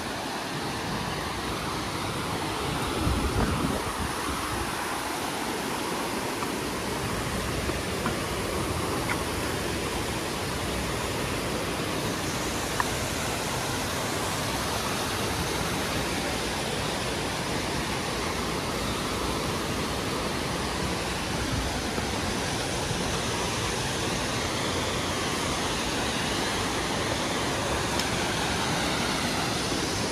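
A mountain creek rushing over rocks, a steady, even hiss of white water, with a brief low thump about three seconds in.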